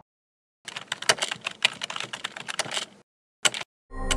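Computer keyboard typing: a quick, uneven run of key clicks lasting about two seconds, followed by a short double click near the end.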